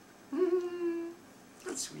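A person's voice humming one held note of just under a second, then saying "sweet" near the end.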